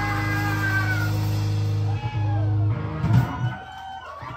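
Electric guitars and bass ringing out on a held final chord at the end of a rock song, with whining feedback tones gliding in pitch above it. The low bass note stops about three quarters of the way in, leaving a few scattered knocks.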